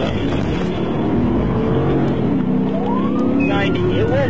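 Patrol car's engine pulling hard under full acceleration, heard from inside the cabin, a steady low drone as road speed climbs. A voice cuts in near the end.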